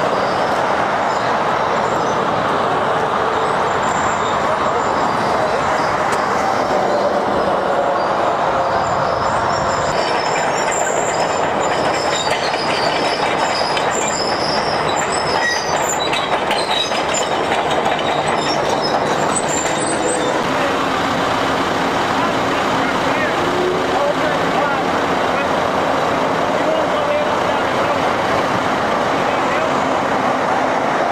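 John Deere 750C crawler dozer on the move: its diesel engine runs steadily under the clank of its steel tracks, with faint high squeaks through the middle stretch.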